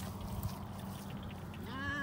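A single short pitched cry that rises and falls in pitch near the end, over a steady low hum.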